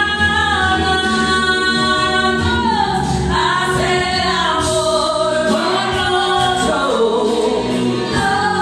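A woman singing into a microphone over a karaoke backing track, with long held notes that glide up and down.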